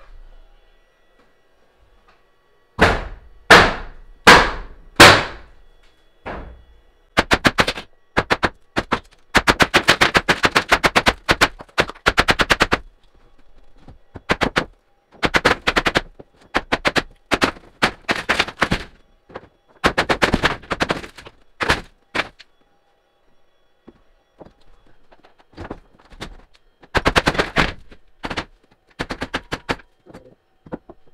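Demolition of a wooden ceiling: four loud separate blows about three seconds in, then repeated bursts of rapid knocking and rattling as the boards are worked loose.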